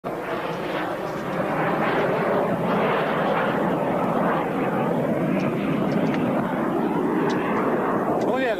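Military jet, a Soko J-21 Jastreb, flying overhead: a steady, loud jet roar that swells slightly after the first second.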